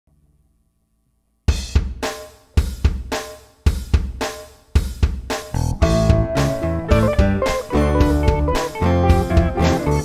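A drum kit intro after about a second and a half of silence: repeated kick, snare and cymbal hits in a steady pattern. Bass and guitar join about six seconds in, and the full band plays on together.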